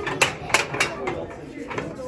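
Cast-iron waffle iron clanking against the cast-iron stovetop as it is handled and turned, three sharp metal knocks in the first second.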